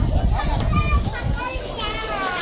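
Children and young men shouting and calling out, with high-pitched yells about half a second in and again near the end, over a low rumble.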